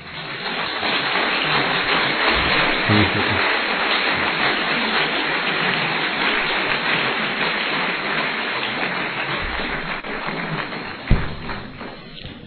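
Audience applauding: dense, even clapping that builds over the first second, holds steady, then dies away near the end, followed by a single thump.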